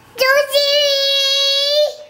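A young child singing one long held note, steady in pitch, lasting about a second and a half.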